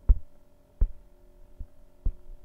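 Dull knocks from a stylus tapping on a laptop touchscreen as pen options are picked and writing begins. There are three knocks about three-quarters of a second apart, the first the loudest, over a steady faint electrical hum.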